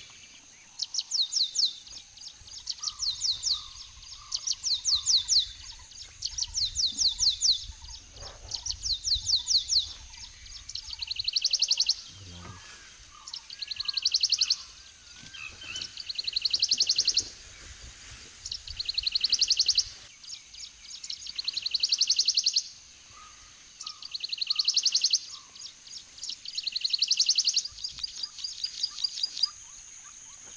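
A bird singing the same short, high phrase over and over, about every two seconds. Each phrase is a quick run of notes that grows louder toward its end. A second, lower and softer bird call can be heard between the phrases.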